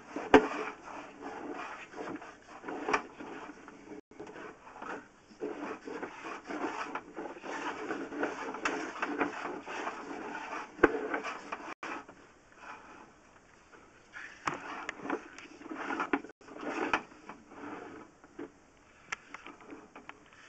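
Sewer inspection camera's push cable being fed off its reel and down the pipe. Irregular rattling and scraping with scattered sharp clicks, easing off for a while after the middle.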